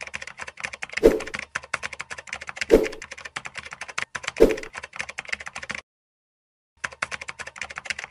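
Typing sound effect: a rapid run of key clicks with three heavier strokes spaced about a second and a half apart. The clicks stop for about a second some six seconds in, then start again.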